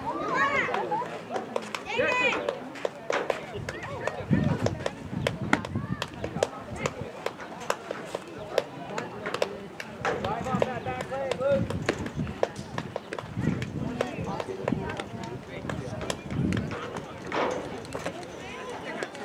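Youth baseball players and coaches calling out across an open field, the words not clear, with many short sharp clicks scattered throughout.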